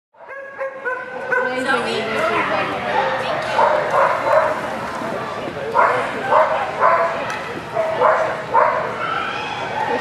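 A dog barking repeatedly, about twice a second, with high yips and people's voices around it.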